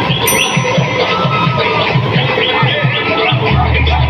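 Loud dance music with a fast, repeating bass beat and DJ scratching, played over a DJ loudspeaker system.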